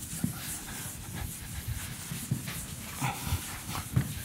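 Board eraser rubbing across a chalkboard in repeated swipes, with a few soft knocks.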